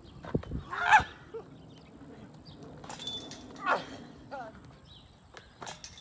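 Disc golf discs striking a metal chain basket: several sharp clanks, the loudest about a second in, some followed by a brief high metallic jingle of the chains. Short voiced exclamations come in between.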